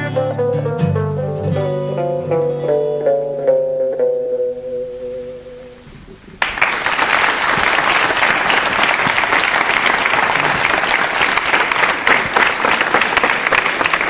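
Closing bars of a swing-style pop song played on guitar, a run of plucked notes settling on one note that fades out about six seconds in. Then a studio audience starts applauding all at once and keeps clapping steadily.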